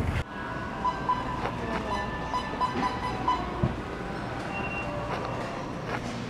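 Indoor store ambience: a steady hum of the building with faint background music, its notes just audible, and a few light knocks from handling.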